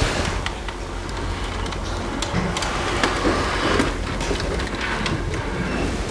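Gooseneck microphone being handled and adjusted: rubbing and scattered short clicks over a steady low hum.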